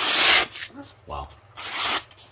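Sheet of paper being sliced by the 12C27 steel blade of a CJRB Ria folding knife: a rasping hiss of cutting paper about half a second long at the start, and another near the end. The clean slicing shows the blade is sharp.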